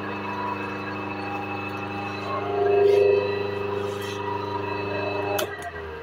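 Large single-phase induction motor (5 HP, capacitor-less) running with a steady electrical hum. About five and a half seconds in, a sharp click cuts the hum off and the motor's low drone dies away as it winds down.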